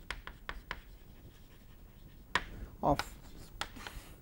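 Chalk tapping and scratching on a chalkboard as words are written: a quick run of short, sharp clicks in the first second, then a few more taps later.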